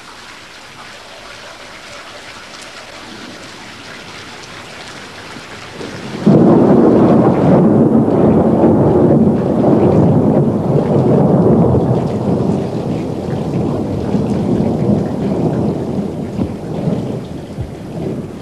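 Steady rain falling, then about six seconds in a loud roll of thunder starts suddenly and rumbles on, slowly easing off.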